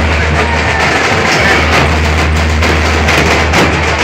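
Loud music from a street DJ sound system, with a heavy, steady bass and drumming over it.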